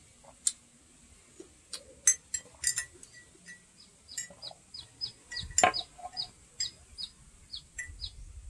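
A bird chirping in short, high, falling chirps, about two a second through the second half, mixed with several sharp clicks.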